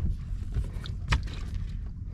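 Steady low rumble of wind and water around a small fishing boat at sea, with one sharp knock about a second in.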